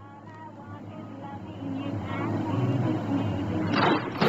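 Low background music from a creepypasta video's soundtrack, with a steady low hum under layered tones, slowly growing louder. Faint voice-like sounds are mixed in.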